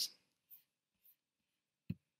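A single sharp computer mouse click near the end, after a couple of faint small noises; otherwise very quiet.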